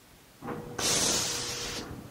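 Spray gun on an automatic test panel spray machine giving a loud compressed-air hiss for about a second, then cutting off abruptly, over a faint steady machine hum that carries on.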